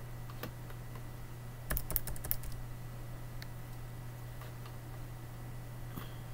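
Computer keyboard keystrokes: a few separate clicks, then a quick run of louder key presses about two seconds in, then a couple more scattered clicks, over a steady low hum.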